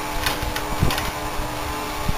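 Steady mechanical hum with a few faint clicks and knocks from hands handling the quad bike's metal parts.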